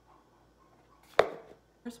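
The paper rim of a Tim Hortons cup being rolled up with the fingers: faint handling, then a single sharp snap a little over a second in.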